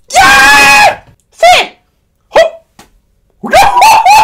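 A man's high-pitched comic squeals and yelps, dog-like in sound. One long held squeal lasts nearly a second, followed by short separate yelps and a quick run of them near the end.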